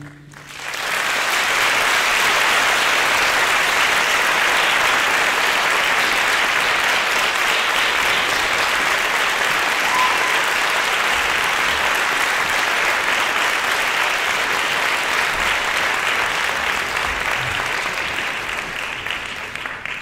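Audience applauding: the clapping swells up within the first second, holds steady, and thins out near the end.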